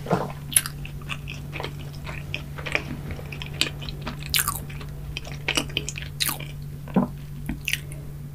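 Close-miked chewing of a mouthful of donut, with irregular wet mouth clicks and smacks.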